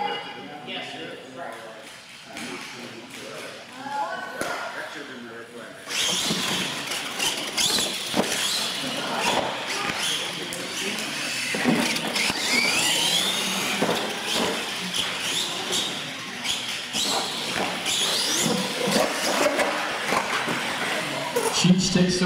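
Radio-controlled monster trucks racing on a concrete floor, starting abruptly about six seconds in: motor whine that rises in pitch as they accelerate, tyre noise and sharp knocks from the ramps and landings. People are talking under it, and they are alone for the first six seconds.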